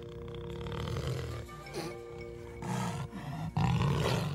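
A brown bear growling, with louder roars near the end, over held notes of suspense music.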